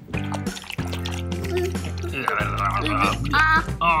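Background music with held bass notes and a melodic line that bends in pitch in the second half.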